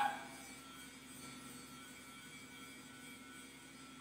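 Faint steady hum with a few constant tones, in a gap where the stream's speech drops out.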